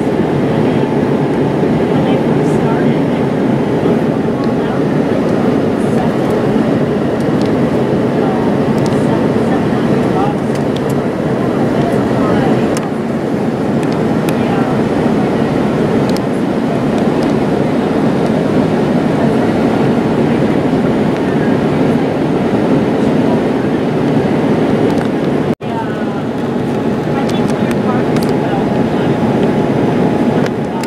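Steady jet airliner cabin noise, the engines and rushing airflow heard from a window seat during the descent. The sound cuts out for an instant near the end.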